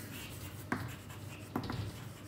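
Chalk writing on a blackboard: faint scratching strokes with a few sharp taps as the chalk strikes the board, about two-thirds of a second in and again near a second and a half.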